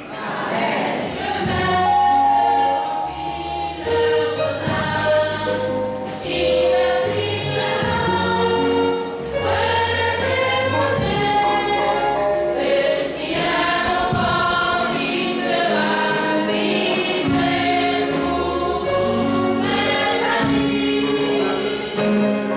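A choir singing a hymn in harmony, with an instrumental accompaniment carrying steady, stepwise bass notes beneath the voices.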